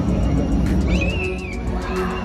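Show music over a stadium sound system, with a high squealing animal-like call that jumps up about halfway through and wavers briefly before dropping away.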